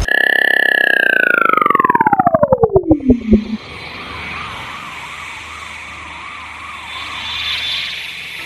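Sci-fi flying-saucer sound effects. A loud tone glides down from high to low over about three seconds, breaking into faster pulses as it falls. It is followed by a quieter warbling hum that wavers about twice a second over a hiss.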